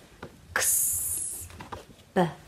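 A woman's voice sounding a long hissed 'sss', the phonics sound of the letter s, for about a second starting about half a second in.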